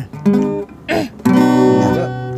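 Acoustic guitar: a few single plucked notes, then a full strummed chord a little over a second in that rings on steadily.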